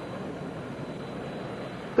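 Steady, even rumble and hiss of a moving passenger vehicle heard from inside its cabin.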